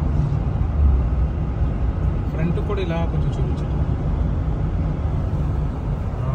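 Steady road noise inside a car moving at highway speed, mostly a low rumble. A brief voice is heard about two and a half seconds in.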